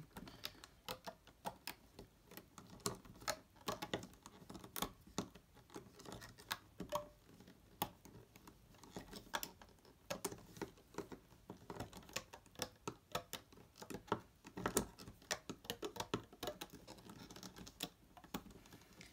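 Plastic Rainbow Loom hook clicking and tapping against the loom's plastic pegs as rubber bands are hooked and looped up: many small, irregular clicks.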